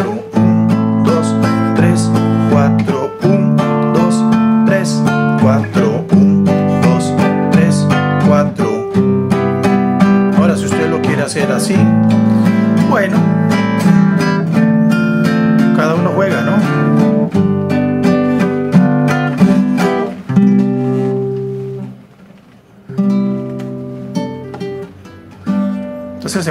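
Nylon-string classical guitar strummed in a bolero ranchero rhythm, cycling through a C maj7–A minor 7–D minor 7–G7 seventh-chord progression, with a new chord about every three seconds. The playing dips briefly about three quarters in before a few last chords.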